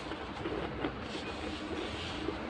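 Steady low rumble of background noise, with a few faint ticks.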